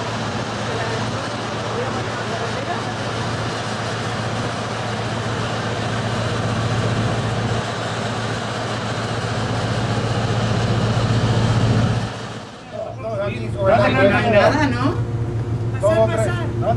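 Steady rushing noise with a constant low hum, machinery and ventilation noise from around a cruise ship's funnel on the open deck. About twelve seconds in it cuts off and people's voices follow.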